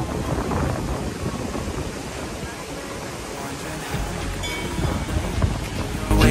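Strong wind buffeting the microphone over the rush of breaking surf, a steady noise with a low rumble.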